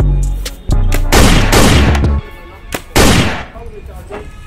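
Paintball marker being fired: several loud shots, some short sharp cracks and some longer blasts, over background music with a low bass.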